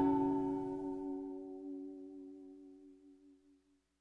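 The final chord of the song ringing out after the last hit and fading away over about three seconds.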